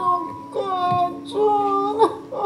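A high voice singing slow, held notes over a steady low accompanying note: a song in a theatre scene.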